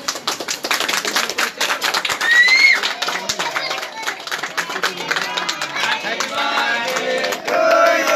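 A group of children clapping their hands in a rapid, uneven patter. About two seconds in there is a short whistle that rises and falls. Over the last couple of seconds many voices join in.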